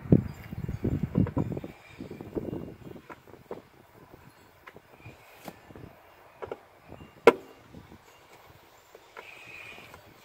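Handling noise of refitting a metal fuel-pump access cover in a car floor: shuffling and pressing for the first two seconds, then scattered clicks and taps of screws and a screwdriver on the cover. One sharp click about seven seconds in is the loudest.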